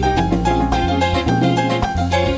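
A live band playing an instrumental house-jazz tune: keyboard chords over a bass line and a steady beat.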